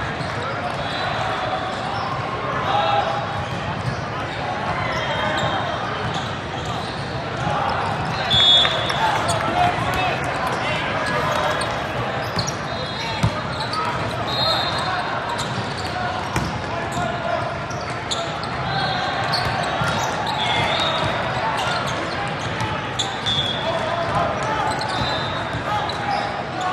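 Indoor volleyball match din in a large echoing hall: many overlapping voices, with occasional sharp volleyball hits and short sneaker squeaks on the sport-court floor.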